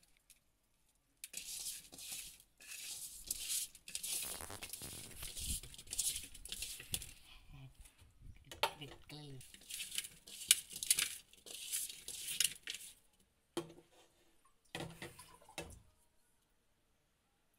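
Hands mixing and rubbing pieces of fish in a wet red spice coating inside a large metal kadai: repeated bursts of squishing and rubbing against the pan.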